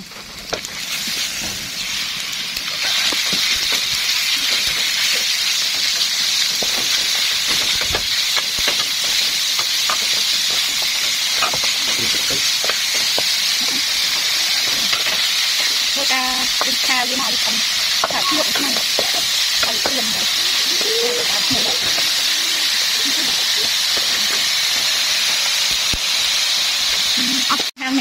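Eel pieces frying with chili in a hot wok: a steady, loud sizzle, with a metal spatula clicking and scraping against the pan as the food is stirred. The sizzle builds over the first few seconds and cuts off suddenly just before the end.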